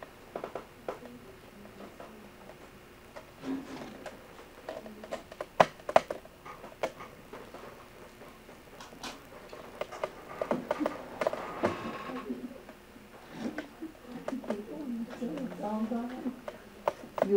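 Scattered sharp clicks and knocks, the loudest two close together about six seconds in, over faint, indistinct talk in a small room.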